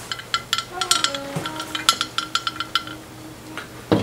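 Porcelain clinking: a run of small irregular knocks and taps, each with a brief ring, as a ceramic vase is handled and set down, ending with a louder knock near the end.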